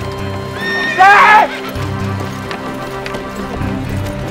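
A horse whinnies once, loudly, about a second in, over steady background music with long held tones.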